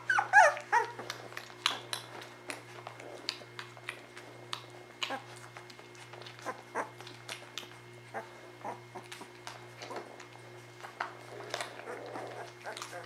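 A newborn Weimaraner puppy whimpering with a few high, wavering squeaks in the first second, then many small clicks and smacks from the nursing litter, over a steady low hum.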